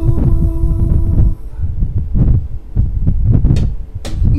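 Low, irregular thumping beats in a solo singer-guitarist's live rock song, between sung lines. A held note rings over them and stops about a second and a half in.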